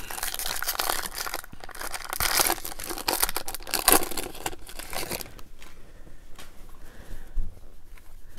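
Foil-lined wrapper of a Topps baseball card jumbo pack being torn open and crinkled by hand. The dense crackling dies down to fainter rustling about five seconds in.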